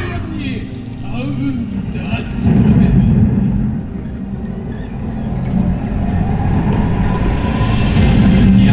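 Yosakoi dance track playing over outdoor loudspeakers in a low, rumbling passage, with voices calling over it. A slowly rising tone comes in during the second half.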